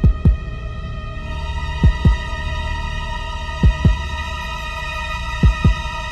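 Dramatic background score: a heartbeat-like double thump, four times at a slow steady pace, over a held chord of steady tones that grows fuller about a second in.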